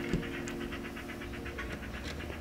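Woodland Scenics Static King static grass applicator switched on and charged, held over the tray and shaken to sift grass fibres through its mesh, with a fast, even ticking of about ten a second.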